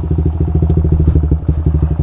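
2008 Yamaha Vixion's single-cylinder 150 cc four-stroke engine running steadily on the move, its exhaust giving an even, low pulse.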